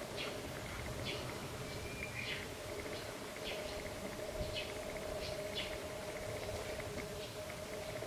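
Faint, scattered short bird chirps, about a dozen spread unevenly, over a steady low hum.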